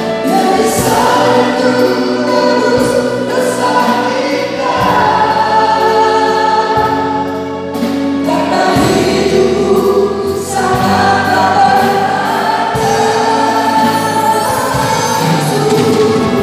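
A small mixed vocal group of men and women singing an Indonesian worship song in harmony into microphones, over a sustained bass accompaniment.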